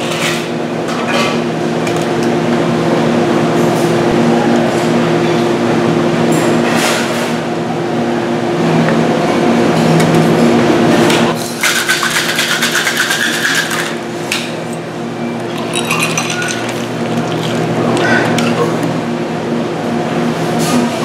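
Ice rattling hard in a metal cocktail shaker for two or three seconds about halfway through, in quick even strokes. Scattered clinks of ice and glassware come before and after, over a steady low hum.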